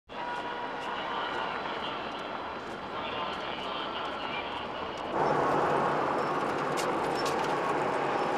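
Outdoor background noise: a steady wash of voices and traffic, stepping up abruptly about five seconds in.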